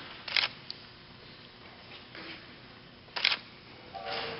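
Two short, sharp clicks about three seconds apart over faint hall hiss.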